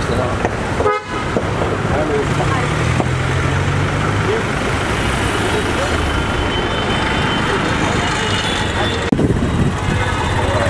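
Busy street traffic with car horns tooting and people's voices. The sound drops out briefly about a second in and again near the end.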